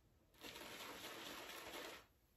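Shaving brush swirling on a tub of CK6-formula shaving soap while it is loaded: a faint, steady, wet swishing that begins about half a second in.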